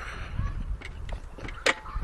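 Outdoor gym machine being worked by hand, its pivots giving faint squeaks and a sharp knock about 1.7 seconds in, over a steady low rumble on the phone microphone.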